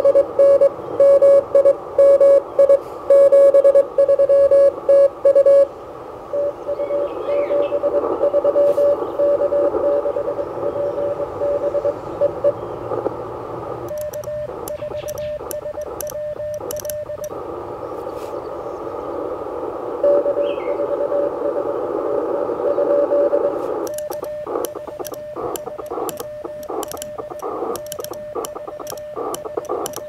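Morse code (CW) from a Mission RGO One transceiver: for the first five or so seconds a strong station's tone keyed in dits and dahs, then a steady hiss of band noise. At about 14 seconds and again from about 24 seconds the operator sends with a Begali Traveler paddle: sidetone beeps with sharp paddle clicks, the band noise cutting in and out with the keying.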